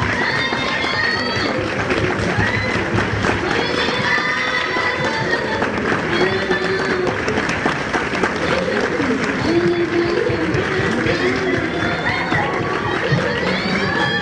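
Many voices cheering and shrieking over one another, with high-pitched cries standing out, at a live idol show.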